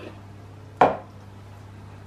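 A single sharp knock about a second in: a small glass jar of cocoa powder set down on the table.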